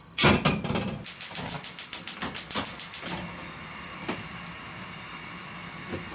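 A loud clatter, then a gas stove's igniter clicking rapidly, about ten clicks a second for some two seconds, until the burner lights and settles into a steady hiss of gas flame.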